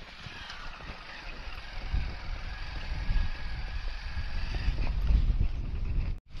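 Wind buffeting the microphone over the rumble of a motorcycle riding along a rough dirt road. It grows louder about two seconds in.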